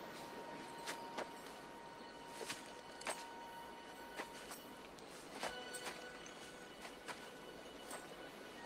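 Sparse, irregular sharp clicks and light steps on leaf-strewn ground, with a faint held note of film score underneath. Another soft held chord comes in about halfway through.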